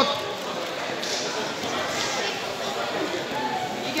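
Indistinct background voices murmuring in a large, echoing sports hall, with a voice rising near the end.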